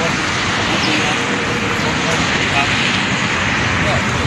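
Low talk between men, half buried under a steady loud rushing noise.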